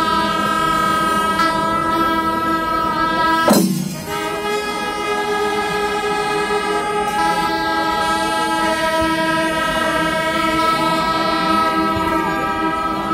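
Several brass horns holding long, loud notes together in a dense, blaring chord, with one loud falling swoop about three and a half seconds in.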